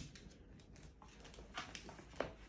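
Faint, scattered clicking of a small dog's claws on a hardwood floor as it walks.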